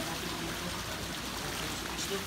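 Swimming-pool water moving and lapping steadily around people standing waist-deep as one of them is lowered back into it, with faint voices underneath.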